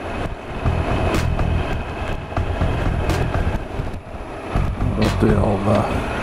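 Triumph Explorer's 1215cc three-cylinder engine running at low speed along a lane, with a few sharp clicks over it.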